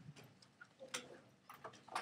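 A few faint, irregular clicks of calculator keys being pressed while values are entered.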